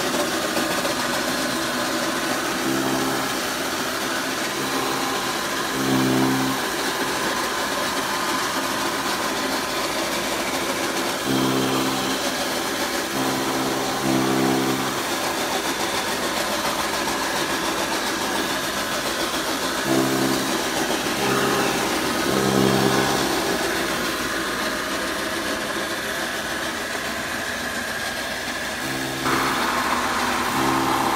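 Electric chaff cutter (straw and grass chopping machine) running with a steady mechanical whir from its motor and cutter drum. A lower hum swells in for a second or so several times.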